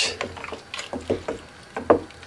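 Stirring elderberries in a steel pot on the stove: several short knocks and clinks against the pot, the loudest near the end.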